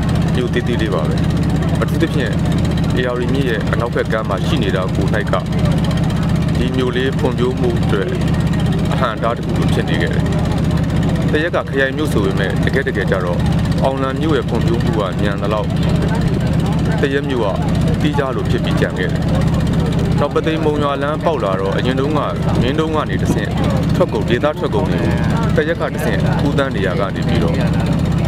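A man talking in Burmese over the steady, low drone of a motorboat's engine.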